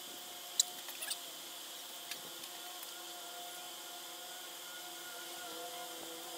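Newspaper masking and tape being pressed and handled on a car hood: a few short sharp crackles about half a second in, a cluster around one second and a weaker one near two seconds. They sit over a steady outdoor hiss and a faint steady hum.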